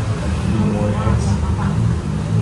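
Restaurant background noise: a steady low rumble under indistinct voices, with a couple of faint light clicks.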